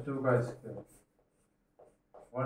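A man speaking Hindi for about the first second, then faint scratches and taps of chalk writing on a blackboard.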